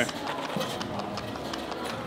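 Loose climbing chalk poured from a foil pouch into a chalk bag: a soft, steady rustle of powder and crinkling packaging.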